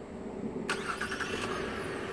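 A 2018 Chevrolet Impala's 3.6-litre V6 is remote-started from the key fob. It cranks and catches suddenly about two-thirds of a second in, then runs on steadily.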